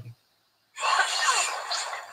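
Soundtrack of a horror-movie clip: from about three-quarters of a second in, a harsh, hissing sound with faint sliding tones, the 'terrible sounds' of the film, fading near the end.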